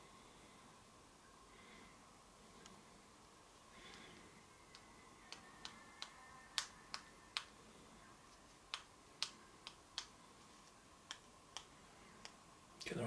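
Quiet room tone with a faint steady whine, broken from about five seconds in by a dozen or so sharp, irregular clicks spaced a fraction of a second to a second apart.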